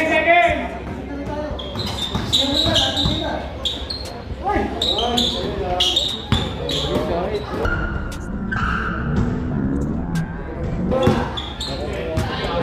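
A basketball being dribbled on a hard court floor: repeated sharp bounces throughout, over people's voices and chatter.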